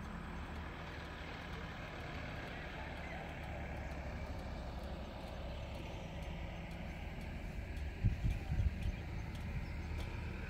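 Steady low outdoor rumble with a faint hiss, and wind buffeting the microphone in a few strong gusts about eight seconds in.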